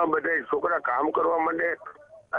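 Speech only: a man talking in a recorded phone call, the voice thin and narrow as over a telephone line, with a short pause near the end.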